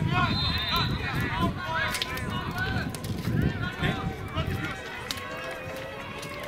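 Many high children's voices shouting and calling over one another during play, with a few short, sharp knocks among them.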